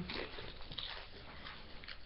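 A Doritos tortilla chip being bitten and chewed with mouth closed: soft, irregular crunching.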